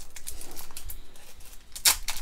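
Foil Pokémon booster pack wrapper crinkling as fingers work at it, then a short, sharp rip near the end as the pack tears open.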